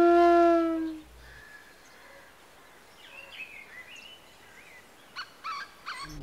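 A flute's held note from the film score fades out about a second in, leaving faint outdoor ambience with a few short bird chirps and some soft clicks near the end.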